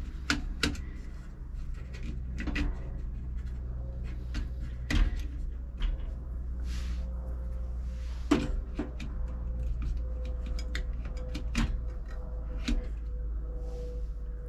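Scattered light clicks and knocks of C-size batteries being handled and pressed into the plastic battery holder of a Toyotomi kerosene heater, with a couple of sharper knocks about five and eight seconds in.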